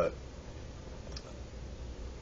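A man's single spoken word at the very start, then a pause filled by a low steady hum of room noise, with one faint click a little over a second in.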